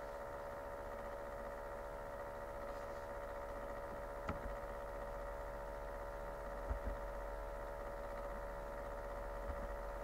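A steady electrical hum made of several fixed pitches, with a single sharp click about four seconds in and a few faint low thumps later on.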